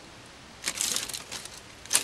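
Crinkling and rustling of clear plastic bags and plastic model-kit parts trees being handled, starting a little over half a second in and easing off, with a sharp click near the end.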